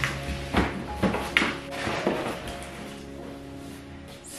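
Background music with held notes, over about five short, sharp tearing and scraping sounds of a cardboard shipping box in the first two seconds as its tear strip is ripped open.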